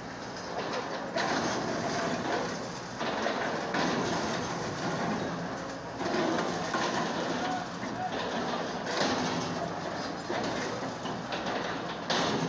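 Hydraulic excavators demolishing brick buildings: engines running under a steady clatter and crunch of breaking brick and falling debris, with many short knocks and changes in loudness every few seconds.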